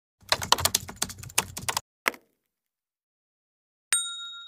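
Typing sound effect: a fast run of keyboard clicks lasting about a second and a half, one more click, then a pause. Near the end comes a single bright bell ding that rings on.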